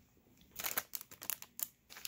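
Plastic packaging crinkling as it is handled, with a quick run of crackles starting about half a second in and lasting about a second and a half.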